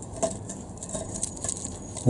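Quiet handling noises: light rustles, small clicks and scrapes of a gloved hand working a new exhaust donut gasket onto the pipe flange.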